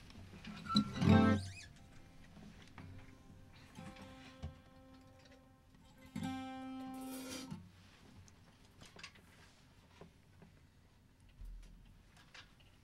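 Acoustic guitar played softly: sparse plucked single notes, then a fuller ringing chord about six seconds in, opening a slow tune.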